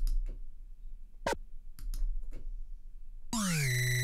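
Several soft mouse clicks, then about three seconds in a short electronic effect note from the VPS Avenger synthesizer. Its tones slide apart, the lowest one falling, then hold steady for about half a second and cut off abruptly.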